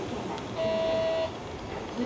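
A steady electronic beep, sounding once for about half a second over the background noise of the railway yard.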